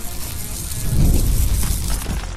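Intro sound effect: a rush of hissing noise with a deep rumbling boom that swells to its loudest about a second in.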